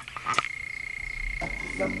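A few light wooden clicks and knocks about a third of a second in, as a carved wooden piece is handled against a wooden shelf, over a steady thin high-pitched whine.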